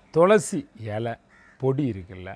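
A man's voice speaking emphatically, in short raised syllables with brief pauses between them; the first syllable is loud, rising and high-pitched, ending in a hiss.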